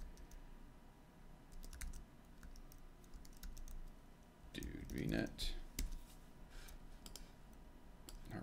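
Computer keyboard typing: scattered, irregular key clicks as a command line is typed out and entered.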